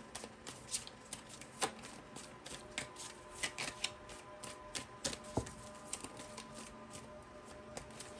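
A tarot deck being shuffled by hand: a run of light, irregular card flicks and clicks.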